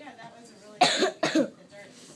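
Two quick coughs close to the microphone about a second in, with faint talk around them.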